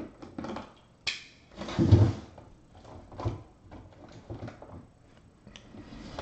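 Handling noises from objects moved about on a table: a series of knocks and clatters, the loudest a heavy thud about two seconds in.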